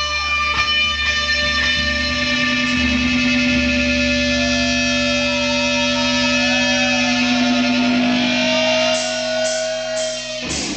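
Loud distorted electric guitars and bass holding one long ringing chord, with a slowly bending guitar note over it and no drums.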